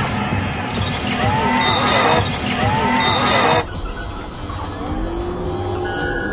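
Live basketball arena sound: music and crowd noise with sneakers squeaking on the hardwood court. About three and a half seconds in, the sound suddenly turns muffled and a little quieter.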